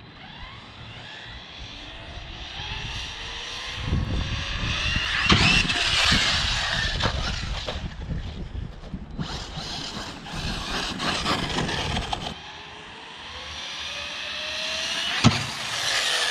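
Large-scale electric RC car's brushless motor whining, rising in pitch as it accelerates in several runs that swell and fade, with a single sharp knock near the end.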